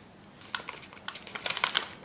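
A sheet of printer paper rustling and crackling as hands fold it and press down the creases, a scatter of small crackles that grows thicker toward the end.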